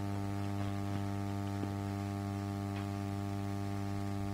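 Steady electrical mains hum with a stack of evenly spaced overtones, and a few faint clicks over it.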